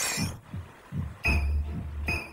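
Cartoon sound effects of liquid surging: a low throb about every 0.8 s, each with a rising swish, then a steady low hum from a little past a second in.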